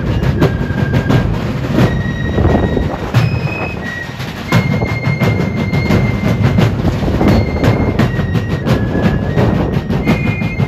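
Fife and drum corps playing a march: high, held fife notes over rapid, steady drumbeats.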